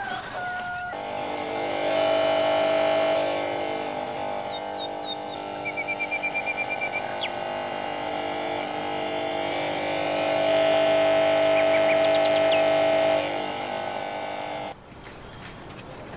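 Small electric air pump humming, switched on about a second in and run through a power regulator: the hum grows louder and softer as the knob is turned, stutters in quick pulses for a moment in the middle, and cuts off suddenly near the end.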